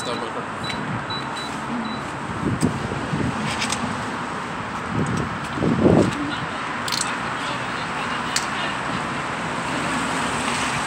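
City street ambience: a steady hum of traffic with indistinct voices of passers-by, swelling loudest about six seconds in, and a few sharp clicks.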